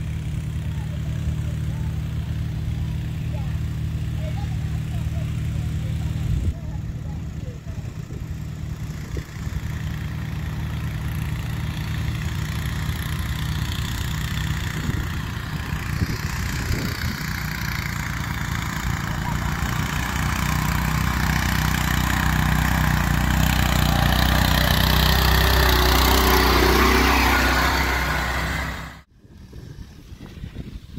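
Small single-cylinder engine of a 7-horsepower custom riding mower running as the mower climbs a dirt trail. It grows louder as it nears, most of all in the last third, then cuts off abruptly just before the end.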